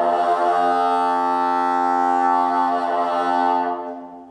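Solo bassoon moving from a higher note to a long-held low note, which then fades away near the end.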